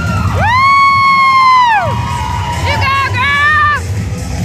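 Crowd cheering during a cheerleading stunt over the routine's music, with one long high-pitched shout, then a shorter, wavering one near the end.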